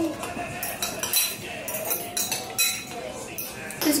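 Metal forks clinking and scraping against bowls several times while noodles are eaten.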